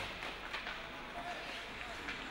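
Quiet ice-rink sound during live hockey play: low arena noise with a few faint clicks and scrapes of sticks, puck and skates on the ice.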